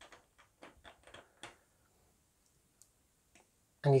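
A quick run of light plastic clicks over the first second and a half, from LEGO pieces being handled on a baseplate.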